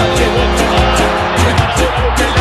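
Background music with a steady beat and a deep bass line.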